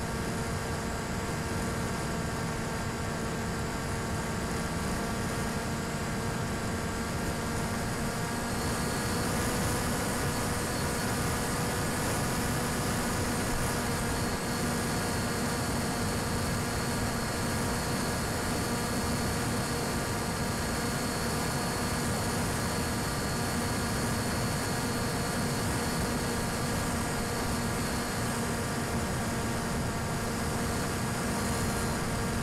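Steady drone of a small RC plane's electric motor and propeller in flight, heard with hiss over the video link: an even hum with several overtones that holds one pitch, and a faint high whine joining about nine seconds in.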